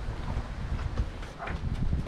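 Wind rumbling on the microphone, with a few faint light clicks and a soft rustle about one and a half seconds in.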